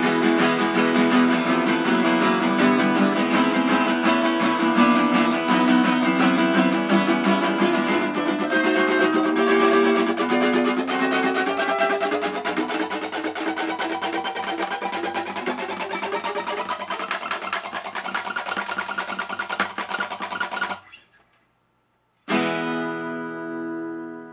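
Acoustic guitar strummed rapidly and continuously, its major chords climbing step by step up a chromatic scale. It cuts off suddenly near the end, and after a moment of silence a single final E major chord rings out and fades.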